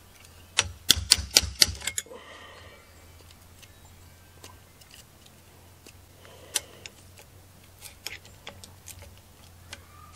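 A hammer tapping the end of a full-tang screwdriver about seven times in quick succession near the start, driving its sharpened tip into the axe eye to work out an old nail and wedge. Later come a few lighter scattered clicks of the screwdriver working against the axe head.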